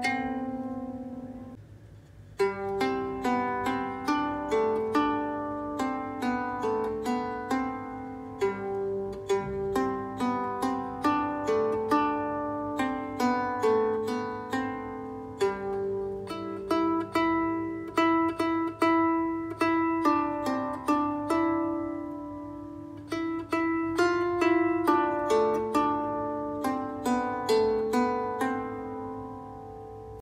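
Finger-plucked 16-string Aklot lyre harps playing a slow melody of ringing, decaying notes. First comes the hollow round-bodied lyre with a sound hole; after a short pause about two seconds in, the hollow deer-design lyre plays on. Their lower notes are quieter than the higher ones.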